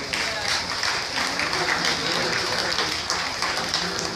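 Audience applauding, dense and steady, with crowd voices mixed in.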